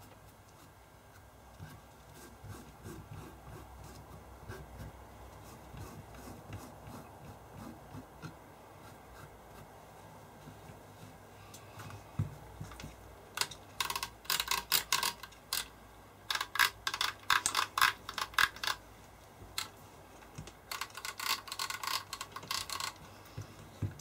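Faint rubbing of a tissue wiping the wafer contacts of a Muirhead D-825-G decade resistance box's rotary switches. About halfway in come three runs of rapid sharp clicks as the switches are turned through their detent positions to check the mechanism after the contacts were cleaned with isopropyl alcohol.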